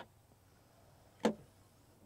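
A light click as the winged badge on a 2011 MINI Cooper S Countryman's tailgate is tipped. About a second later comes a single sharp click as the tailgate latch releases.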